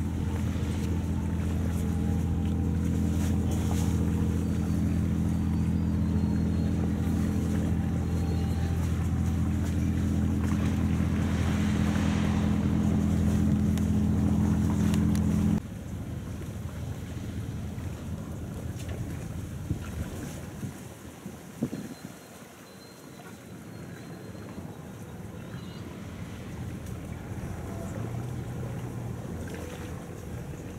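Crawler crane's engine running loud and steady under load as the grab hoists scrap iron. The drone stops suddenly about halfway through, leaving a fainter machinery hum with wind on the microphone.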